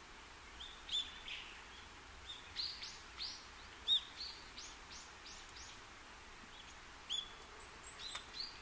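Faint small-bird chirps and tweets, a scatter of short high notes that come thickest in the middle, over a soft hiss.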